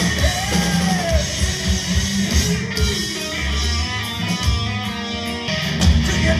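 Heavy metal band playing live through a PA, with electric guitars and a drum kit to the fore, heard from the audience floor. Pitched guitar lines bend up and down near the start, and sustained chords ring through the middle.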